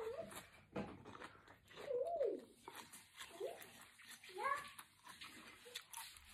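A dog whining in short rising-and-falling whines, about three times, the last climbing highest, over faint clicks of eating.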